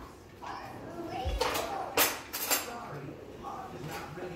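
Metal cutlery clinking as a spoon is picked out from among other utensils, a few short sharp clinks in the middle.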